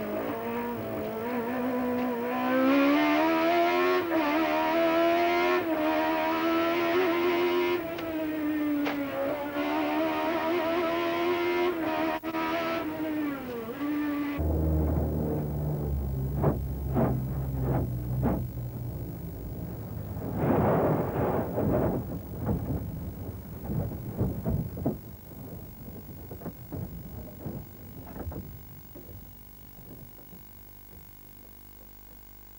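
Osella BMW barchetta's racing engine, heard onboard, revving hard and rising and falling in pitch through the gears. About halfway the engine sound cuts off abruptly and gives way to music with deep bass notes and sharp knocks.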